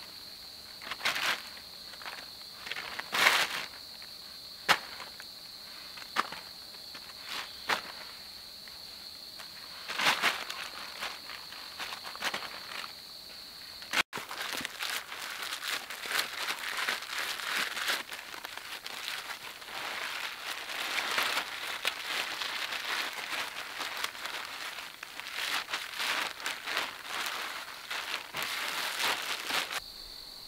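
Wet clay being scooped by hand and dropped into a plastic trash bag, scattered short thuds and rustles over a steady high insect buzz. After about halfway, the black plastic bag crinkles continuously as it is twisted shut.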